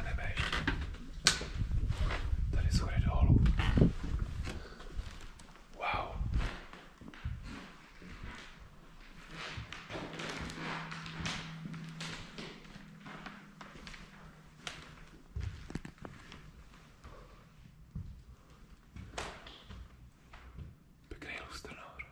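Footsteps and scattered knocks and thuds on a debris-strewn parquet floor, heaviest in the first few seconds, with faint indistinct whispering voices.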